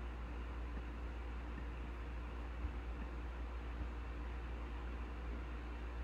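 Quiet room tone: a steady low hum under a faint hiss, with a faint click or two.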